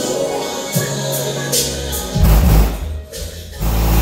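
A song playing loud through a car's aftermarket stereo and subwoofers in a bass test, with deep bass notes coming in about a second and a half in and hitting hardest around two seconds in and again at the end.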